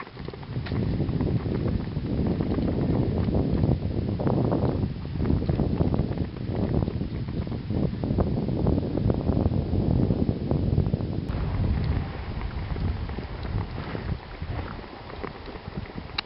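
Wind rumbling on the microphone over the steady rush of a four-malamute sled-dog team and the rig it pulls moving through snow.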